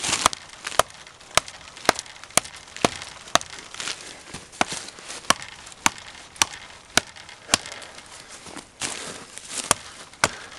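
Fallkniven A2 Wilderness, a large fixed-blade survival knife, chopping into the trunk of a dead tree. Sharp knocks of the blade biting the dry wood come at a steady rhythm of about two a second, with one short pause near the end.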